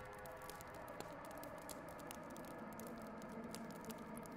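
Faint background music: a low bed of held, sustained tones with a few light ticks.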